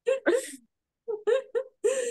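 A woman's voice making three short, breathy vocal sounds with brief silences between them.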